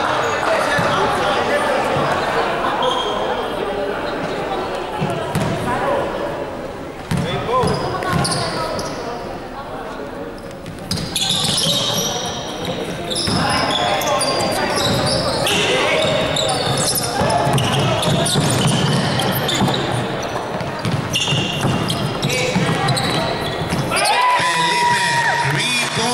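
Indoor basketball game play echoing in a large hall: the ball bouncing on the hardwood court. From about eleven seconds in, many short high squeaks of sneakers on the floor join as players move for the rebound, over steady chatter of voices.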